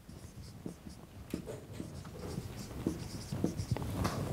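Marker pen writing on a whiteboard: a run of short, separate scratchy strokes and taps as a word is written out.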